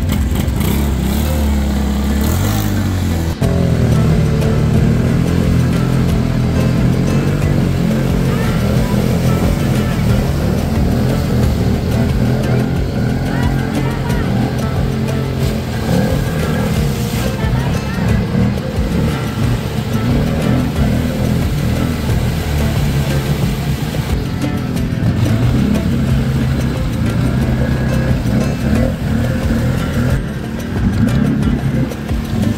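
ATV engines running and revving under load as the quads churn through deep mud and water, with background music playing over them.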